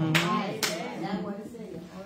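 Two sharp hand claps about half a second apart in the first second, over a man's voice and a murmured 'mm-hmm' of agreement.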